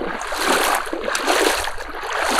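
Shallow water splashing and sloshing as a jerk line tugs a spread of plastic duck decoys, setting them bobbing and swimming.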